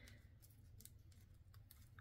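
Near silence, with a few faint, light clicks from a plastic fashion doll being handled.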